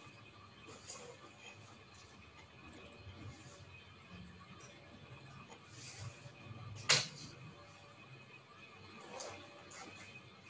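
Faint background noise with a low hum, and one sharp click about seven seconds in.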